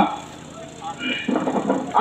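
A man's voice amplified through a handheld microphone and loudspeaker pauses briefly, then starts again about a second in.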